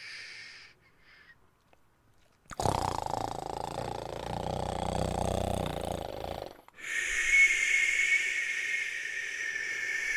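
A man making long wordless breath sounds. A brief hiss ends under a second in, followed by near silence. Then comes a loud, rough, throaty exhale of about four seconds, and after a short break a steady hiss of about three seconds.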